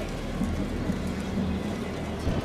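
Wind rumbling on the microphone over indistinct outdoor crowd noise, a steady noisy haze with no clear strikes or tones.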